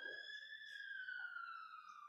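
A faint, high whistling tone that glides slowly up in pitch and then slowly back down, stopping near the end.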